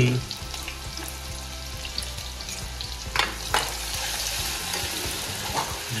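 Chopped green chillies sizzling in hot oil in a kadhai, a steady frying hiss. A couple of sharp clicks sound a little past three seconds in.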